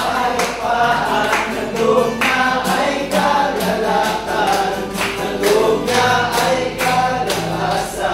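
A group of men singing a Tagalog Christian praise song together, with acoustic guitar and steady rhythmic hand clapping.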